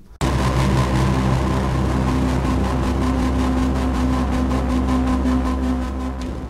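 A motor engine running steadily, with a low hum and a fast, even pulsing. It starts abruptly a moment in.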